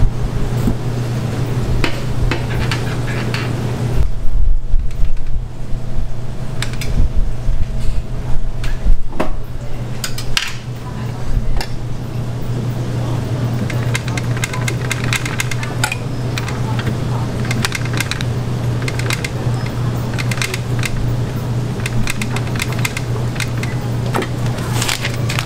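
Kitchen work at a waffle iron: a steady low hum of equipment with scattered clinks and clatter of metal utensils, trays and a wire rack, and a stretch of heavier knocks and thumps in the middle.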